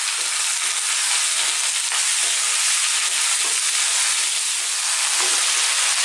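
Cubed potatoes, onions and mustard seeds sizzling steadily in hot sunflower oil in a frying pan on above-medium heat, stirred with a wooden spatula.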